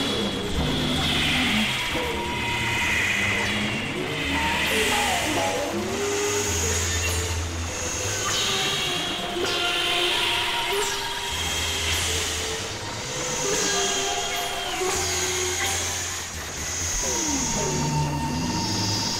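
Experimental electronic synthesizer noise music: low bass drones that switch on and off every few seconds under steady and gliding mid-range tones, with hissing noise swells and sweeps that fall in pitch.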